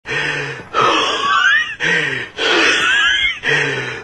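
A person taking long, wheezy deep breaths, about three in a row, each with squeaky whistling sounds that rise and fall in pitch.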